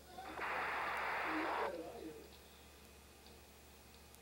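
A burst of radio-channel hiss, about a second and a half long, starting and stopping abruptly as a transmitter is keyed, with a few faint wavering tones trailing after it.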